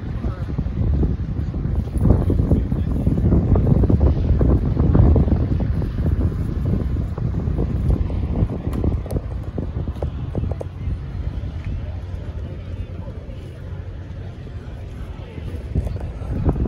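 Wind buffeting the microphone in a low, ragged rumble, heaviest in the first few seconds and easing later, with people talking in the background.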